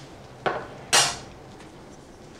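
Metal kitchen utensils set down with a clatter: two knocks about half a second apart, the second louder and brighter with a short ring.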